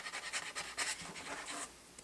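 A person sniffing in short, quick breaths, about four a second, stopping shortly before the end.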